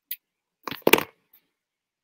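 A single click, then a short loud clatter lasting about half a second, with a faint tick after it.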